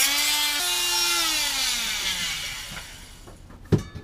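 Nuts being worked loose off the old bulkhead's threaded bolts: a loud squeal that jumps up in pitch after about half a second, then slides down and fades over the next two seconds. A single sharp knock follows near the end.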